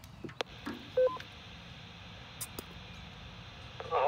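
A two-way radio unkeys with a click, then a quick three-note electronic beep sounds through the TYT TH-8600's speaker: a repeater courtesy tone. After it comes a steady hiss of the repeater carrier until the other station starts talking.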